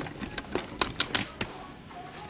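A quick string of light clicks and taps, about half a dozen in a second and a half, from a removed vacuum-cleaner motor and the small bulb wired to it being handled and turned over by hand.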